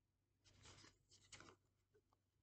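Faint rustle of a deck of tarot cards being picked up and handled, in two short scratchy bursts about half a second and a second in.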